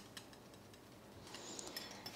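Wire whisk faintly ticking against a glass bowl while stirring a liquid egg-and-cream mixture: a few light clicks at the start and again near the end, with a quiet stretch between.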